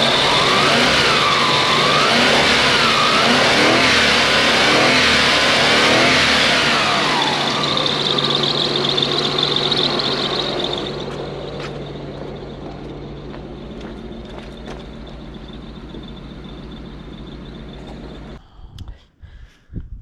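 Lexus SC400's 1UZ-FE V8 running on a newly fitted fuel pump, the revs rising and falling over the first several seconds. It then settles to a quieter steady idle about halfway through. The engine is running better and better the longer it runs. The sound cuts off shortly before the end.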